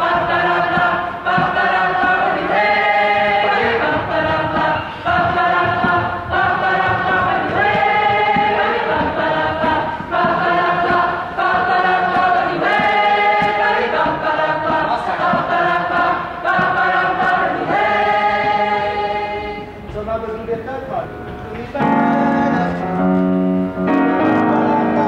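A large mixed group of voices sings a short phrase over and over in harmony, at whatever pitch each singer chooses. Near the end the singing thins and piano chords come in.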